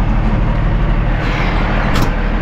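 Kenworth W900L's Cummins ISX diesel engine idling steadily, with one sharp click near the end.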